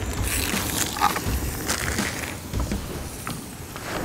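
Bratwurst frying in oil in a small pan, sizzling steadily with scattered small pops.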